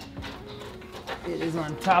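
Low, murmured men's speech, growing louder near the end.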